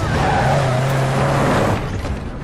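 Old military truck driving fast, its engine running hard with tyre squeal; the sound drops away sharply near the end.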